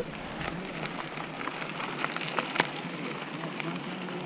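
Mountain bike tyres rolling over a dirt trail, a steady gritty noise with scattered small clicks and rattles from the bike.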